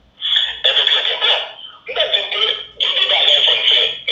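Several men's voices shouting in loud, harsh bursts, with short breaks in between.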